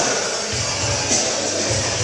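Music with a steady beat and deep bass pulses.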